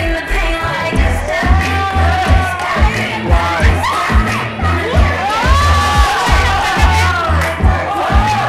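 Dance music with a heavy bass beat, about two beats a second, with an audience of children cheering and shouting over it.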